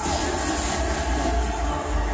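Television drama soundtrack playing: a steady low rumble of sound effects under music.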